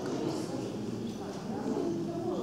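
Indistinct voices talking in the background, a low, even murmur of chatter with no clear sound standing out.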